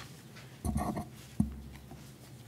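Bible pages being handled and turned at a pulpit microphone: a short rustling burst, then a single sharp knock about one and a half seconds in.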